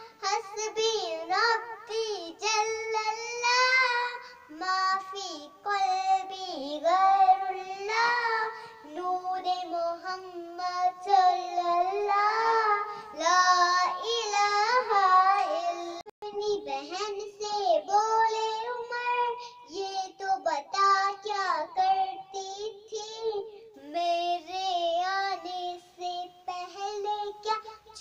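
A young girl singing an Urdu naat (devotional song) unaccompanied, one continuous melodic line with long held and gliding notes.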